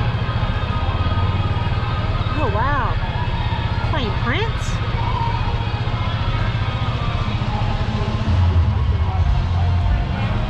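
Golf cart driving along a street, with a steady low rumble of motor, tyres and wind that grows louder near the end. Music and two short rising-and-falling pitched sounds, about two and a half and four seconds in, are heard over it.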